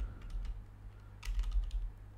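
Typing on a computer keyboard: a few separate keystrokes, then a quick run of several about a second and a half in, over a steady low hum.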